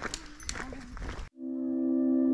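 Faint outdoor rustle with a couple of light clicks, then an abrupt cut about a second in to background ambient music: a steady drone of several held, ringing tones that swells in and holds.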